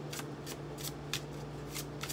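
Tarot cards being shuffled by hand: a run of short, crisp card clicks, several a second.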